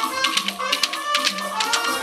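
Live church band music: held pitched instrument notes over quick, sharp percussion strokes and rattle hits.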